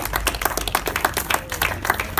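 A small group of people applauding with quick, overlapping hand claps.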